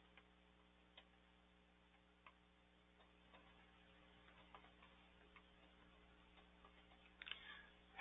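Near silence: a faint steady hum with scattered, faint clicks of computer keyboard keys being typed.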